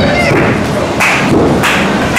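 Two sharp slapping thuds on a wrestling ring's mat, about a second in and again about half a second later, as wrestlers' bodies hit the canvas.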